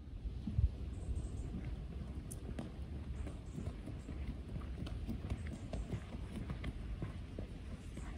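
Wind rumbling on the microphone, with scattered light knocks and footfalls as medicine balls are rolled along a grass court, picked up and walked back; a sharper knock comes about half a second in.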